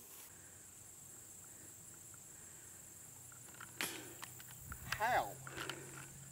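A disc golf putt missing low: about four seconds in, the disc knocks sharply against the lower part of the metal basket, and about a second later a man gives a short wordless groan. A steady high insect buzz runs underneath.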